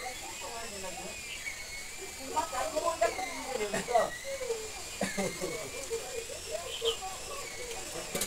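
Indistinct voices, densest from about two seconds in, over a steady high whine that wavers slightly in pitch.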